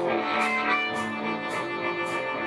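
Live blues band playing an instrumental passage: hollow-body electric guitar over bass and drums, with a cymbal beat about two times a second.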